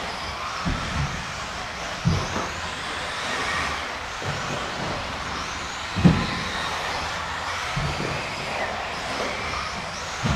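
Several 1/10-scale 4WD electric RC buggies racing together, their motors and drivetrains whining as they speed up and slow down around the track. There are occasional thumps as the cars hit the track, the loudest about two and six seconds in.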